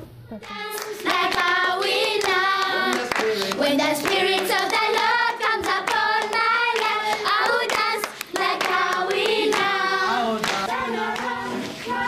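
A children's choir singing together and clapping along. The singing starts about half a second in and breaks off briefly about two-thirds of the way through.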